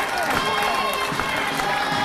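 A group of voices singing and calling out together over crowd noise, several pitches overlapping and gliding.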